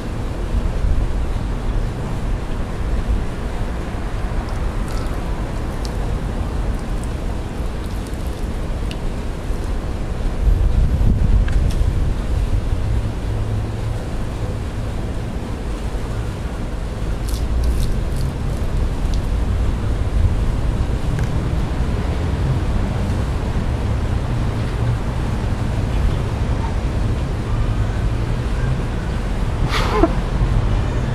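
Wind buffeting the microphone, a steady low rumble that swells for a couple of seconds about ten seconds in, with a few faint clicks over it.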